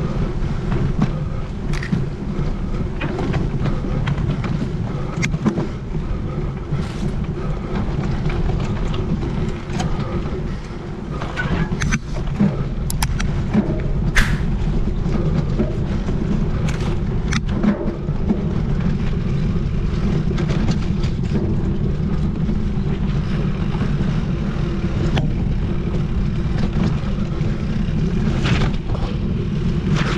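Mountain bike ridden along a dirt forest trail: a steady rumble of tyres on the ground, with scattered clicks, knocks and rattles as the bike goes over bumps.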